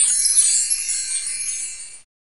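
High, glittering chime shimmer at the tail of a radio programme's closing jingle, fading away over about two seconds and then cutting off.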